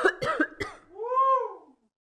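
Voice-acted coughing: three short coughs in quick succession, followed by one drawn-out vocal sound that rises and then falls in pitch.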